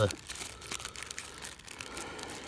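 Thin plastic bag crinkling and rustling as gloved hands handle it: soft, irregular crackles and rustles.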